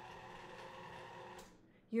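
Electric stand mixer running at low speed as it mixes cookie dough, a steady motor hum, switched off with a click about a second and a half in.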